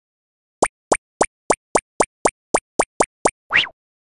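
Cartoon sound effects for an animated intro: eleven quick plops in an even run, about three to four a second, then a short rising swoosh near the end.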